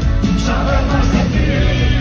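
Rock band playing live through a concert PA: guitars, keyboards and drums with a man singing, heard from within the crowd.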